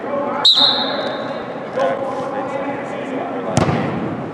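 Soccer ball kicked hard on indoor artificial turf near the end, with an earlier sharp hit and a short high tone about half a second in. Players' voices and shouts run throughout, ringing in a large hall.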